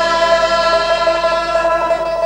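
Live band music: several voices sing one long held note together over plucked string instruments.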